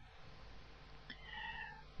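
A faint, short animal call held at one pitch for about half a second, a little past a second in, over a low steady hum.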